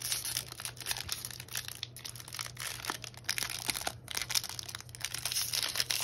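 Foil wrapper of a Pokémon Vivid Voltage booster pack being torn open and crumpled in the hands: an irregular run of crinkling and crackling.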